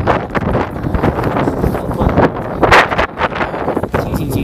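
Wind buffeting the camera's microphone in loud, uneven gusts, a rumbling, blustery noise.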